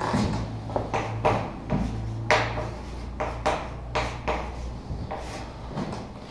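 About a dozen irregular knocks and clicks of objects being handled, the loudest a little past two seconds in, over a steady low hum.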